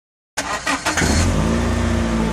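Car engine revving. It starts suddenly about a third of a second in, climbs in pitch, then holds a steady note.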